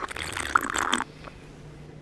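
Slurping a thick strawberry smoothie through a straw, about a second of sucking hiss with small wet clicks.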